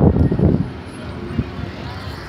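Handling noise from a hand rubbing over the phone and its microphone: a loud low rumble in the first half second, then a single knock about one and a half seconds in.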